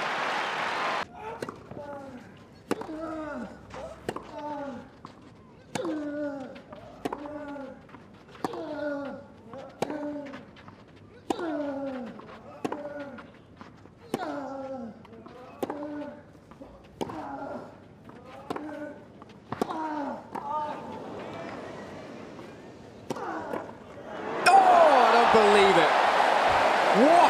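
Tennis rally on clay: racket strikes on the ball about once a second, each with a player's short falling grunt. Near the end the crowd bursts into cheers and applause as the point is won.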